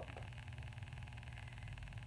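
Quiet room tone: a low steady hum with faint hiss.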